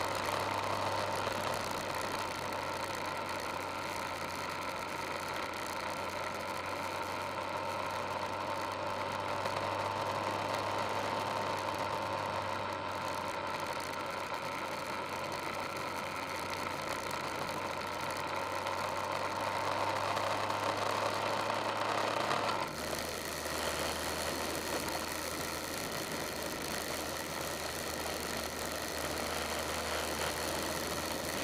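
Vehicle driving along a gravel road: a steady engine hum with tyre noise from the gravel. About three-quarters of the way through, the engine note suddenly drops to a lower pitch and the road noise eases.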